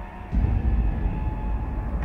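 Title-sequence sound design: a deep bass rumble that swells in about a third of a second in and holds steady, with faint thin tones above it.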